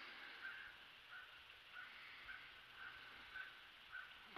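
Near silence, with faint short high chirps repeating roughly every half second.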